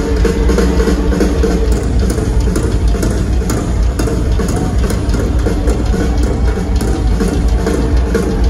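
Rock drum solo on an amplified drum kit: a dense, unbroken stream of kick-drum, tom and cymbal hits with a heavy low bass-drum boom, heard through the arena's PA from the audience.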